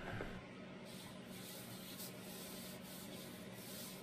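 Faint wood-on-wood rubbing as a wenge box lid is slid and pressed onto its box during a test fit, over a low steady hum.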